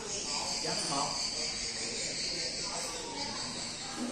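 A steady, high-pitched insect drone, like a chorus of crickets, running on without a break.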